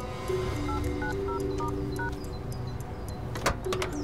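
Five short touch-tone keypad beeps of a mobile phone being dialled, each beep two tones at once, over sustained background music; a sharp click follows about three and a half seconds in, as of a car door.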